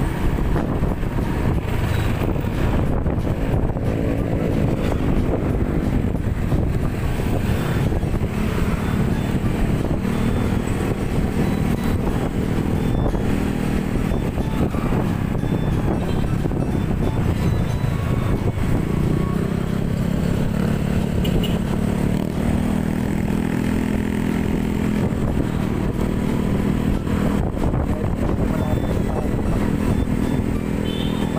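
Small underbone motorcycle's engine running steadily while riding at around 40 km/h, with wind and road noise on the handlebar-mounted camera's microphone.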